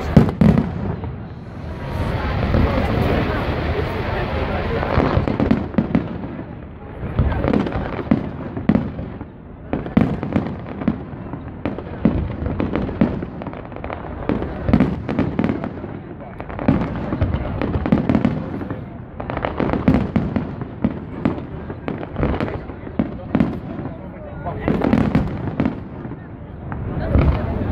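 Aerial fireworks display: shells bursting one after another, sharp bangs and crackle throughout, with the loudest bang just after the start.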